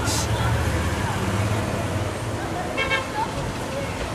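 Steady street traffic noise from below, with a short car horn toot about three seconds in.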